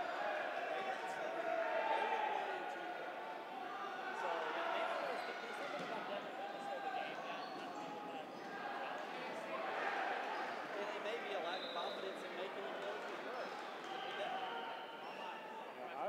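Many voices talking at once, overlapping and indistinct in a large gymnasium, with occasional rubber dodgeballs bouncing on the court floor.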